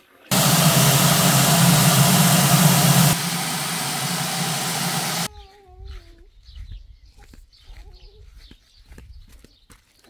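Garden hose running water into a plastic bucket, a loud steady rush. It drops in level about three seconds in and cuts off suddenly about five seconds in.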